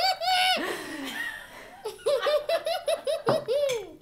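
A young child laughing in two bouts of quick, high-pitched 'ha-ha-ha' pulses, each ending in a drawn-out falling note: the first just after the start, the second from about two seconds in until near the end.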